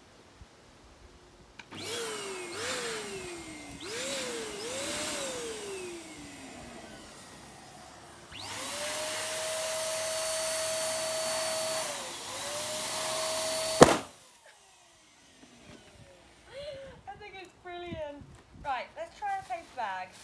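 An electric balloon pump runs in short bursts, its motor pitch climbing and falling, then runs steadily while inflating a latex balloon, with a brief dip in pitch near the end. The balloon then bursts with a single loud, sharp pop, and the pump stops.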